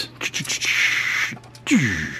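A few light clicks of plastic toy parts as a Transformers action figure is twisted round by hand, followed by a breathy hiss and a short grunt falling in pitch near the end.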